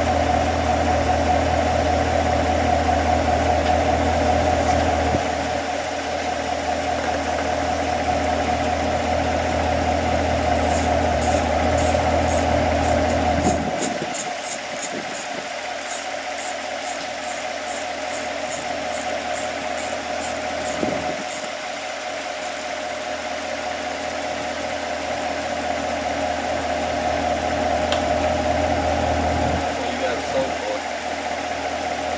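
Chevrolet Corvette Stingray's 6.2-litre LT1 V8 idling with a steady hum; the low part of the hum drops in level about five seconds in and again midway. A run of quick, light ticks, about three a second, comes in over the middle stretch.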